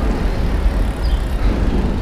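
Wind rushing over a helmet-mounted action camera's microphone while riding a bicycle through city traffic: a steady, deep rushing noise.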